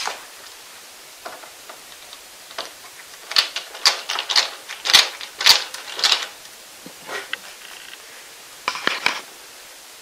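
Metal clamp hardware on a CNC router bed clicking and clinking as the hold-down clamps are tightened with a screwdriver. The clicks come in a quick cluster from about three to six seconds in, then a few more near the end.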